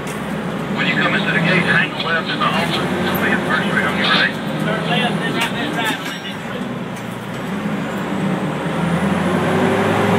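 Fire engine's engine running steadily with road noise, heard from inside the crew cab, with muffled voices over it in the first half.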